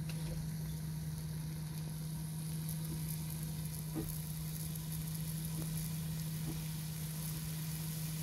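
Thin slices of beef brisket sizzling as they start to fry in a nonstick pan: a steady hiss. A steady low hum runs underneath.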